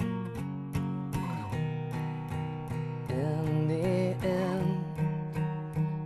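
Acoustic guitar strummed steadily, accompanying a live worship song, with a voice holding a wavering note around the middle.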